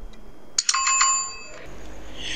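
Two quick clicks, then a bright bell ding that rings for about a second and fades: a notification-bell sound effect.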